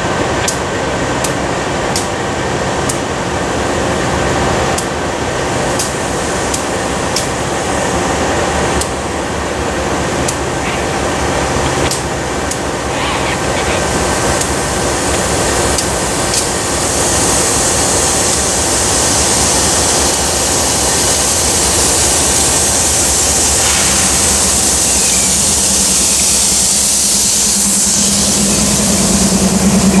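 Diesel-electric freight locomotive running slowly past at close range, its engine giving a steady drone. Sharp clicks come through during the first half, a steady hiss joins about halfway through, and a low steady engine note comes in near the end.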